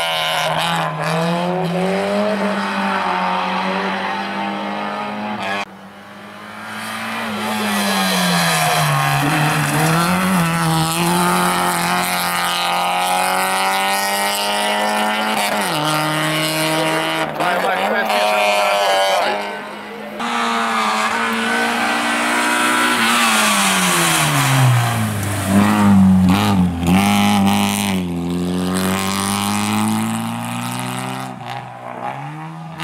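Peugeot 106 Rallye's 1.3-litre four-cylinder engine driven hard at racing speed, its revs climbing, holding and dropping again with gear changes and lifts. The sound dips sharply twice, about five and a half seconds in and again around twenty seconds.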